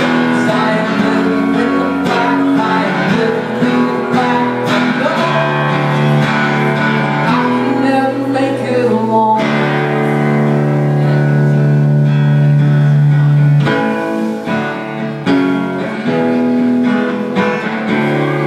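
A live rock band plays an instrumental passage with strummed acoustic guitar chords. About halfway through, one chord rings and is held for several seconds.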